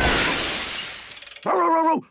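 A cartoon shattering-glass sound effect: a loud crash that fades away over about a second, followed by a brief fast rattle. Near the end a cartoon dog begins a steady howl.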